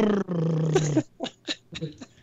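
A man blowing a raspberry (a Bronx cheer) with his lips, one buzzing, steady-pitched blast just under a second long, imitating the sound a smart speaker made at him.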